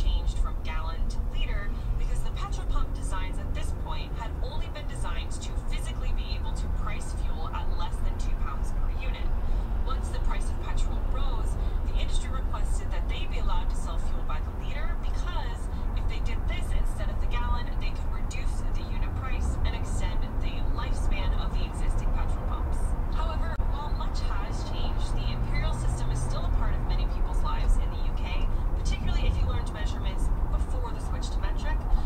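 Steady road and drivetrain noise from a car cruising at highway speed, heard from inside the cabin, with indistinct talk playing underneath.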